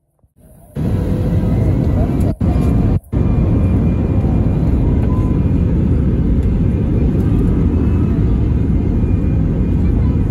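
Loud, steady jet airliner engine noise heard from inside the cabin as the plane turns onto the runway, with a deep rumble underneath. It starts abruptly about a second in and drops out briefly twice, around two and three seconds in.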